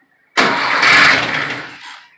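VW engine turned over by its starter motor from an ignition key for about a second and a half, starting suddenly and fading out near the end. It cranks without firing because there is no gasoline in the carburetor.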